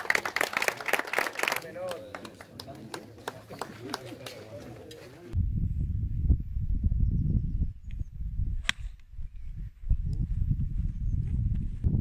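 Wind buffeting an outdoor microphone on a golf course, with a single sharp crack of a golf club striking the ball about nine seconds in. Before that, for the first five seconds, background voices at the prize table.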